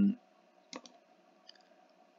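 A single computer mouse click, a sharp press and release close together, about three quarters of a second in, against near silence.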